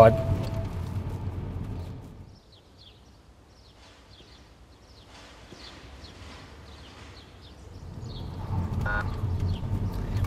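Low car-cabin road and engine rumble fades out over the first two seconds. Then a quiet street with faint, scattered bird chirps. From about eight seconds in, a car's rumble grows louder as it approaches.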